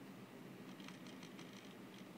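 Near silence: faint room tone with a low steady hum, and a few quick, faint clicks about a second in.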